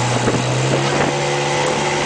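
Small outboard motor on an aluminum fishing boat running under way at a steady pitch, with wind and water noise over it.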